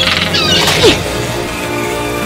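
Film-score music with animated creature sound effects: a burst of high chittering squeals in the first second, ending in a short sharp falling cry, the loudest moment.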